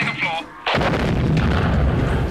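A short high-pitched scream, then about two-thirds of a second in a sudden loud explosion whose low rumble carries on to the end.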